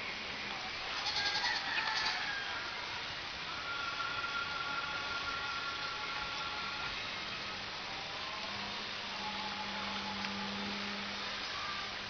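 Distant whine of a radio-controlled model plane's electric motor and propeller overhead, coming and going in faint steady stretches over a constant hiss.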